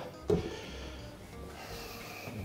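A glass lid set down on a large frying pan: one short knock just after the start, then only a faint steady background.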